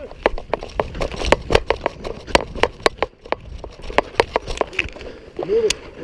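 A rapid, irregular string of sharp cracks and clatter from a squad moving under fire in training: simulation-round rifle shots mixed with footsteps and the rattle of gear, several sharp hits a second, with a short shout near the end.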